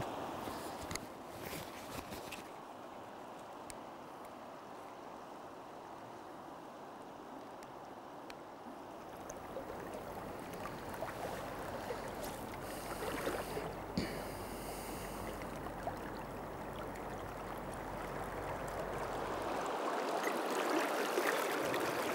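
A river flowing in a steady rush, growing a little louder near the end as a wader moves through the current.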